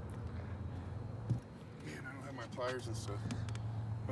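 Voices, too faint or indistinct for words, over a steady low hum, with one short thump a little over a second in.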